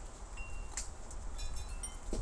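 A few faint, high, thin ringing tones over a steady low hiss. The tinkling is like small chimes: one tone first, then several together near the end.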